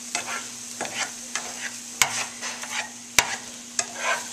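Scrambled eggs being stirred and scraped around a nonstick frying pan with a utensil, over a soft sizzle. The utensil knocks sharply against the pan about two seconds in and again just after three seconds.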